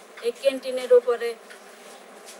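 A woman's voice speaking, thin and bass-less from heavy filtering of the recording. She pauses after about a second and a half.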